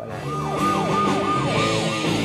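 Electric guitar with its tremolo arm worked up and down, the pitch dipping and returning about three or four times a second over held low notes, a siren-like wail imitating a vehicle.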